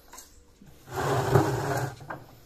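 A wooden honeycomb frame being handled and pulled out, making a loud scraping, sliding rub about a second long.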